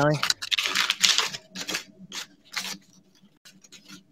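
A sheet of paper being ripped and crumpled by hand: a run of short, irregular rips and rustles over the first few seconds, thinning out and growing faint near the end.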